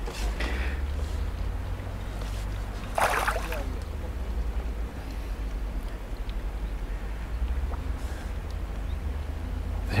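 Wind rumbling on the microphone, with a short splash about three seconds in as a hooked fish thrashes at the surface on the pole line.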